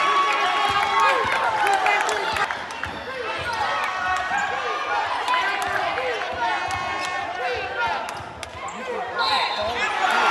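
A basketball being dribbled on a hardwood gym floor during live play, with sneakers squeaking on the court and players and spectators calling out in the hall.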